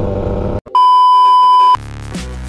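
A loud, steady electronic beep lasting about a second cuts in after a brief stretch of a Yamaha F1ZR's two-stroke engine running on the road. Electronic music starts just before the end.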